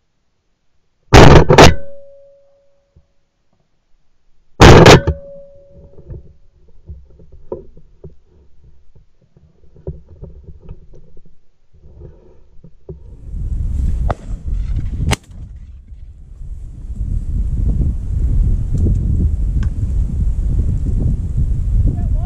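Shotgun shots at pigeons: two close together about a second in, half a second apart, and another about three seconds later, each very loud with a short ring. From about halfway on, wind buffets the microphone with a low rumble.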